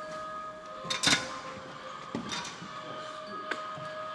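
Footsteps crunching over debris on a concrete floor, a few separate steps with the sharpest crunch about a second in, over a faint steady high tone.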